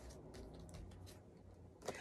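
Near silence: faint soft ticks and light handling of paper oracle cards as one is drawn from the deck.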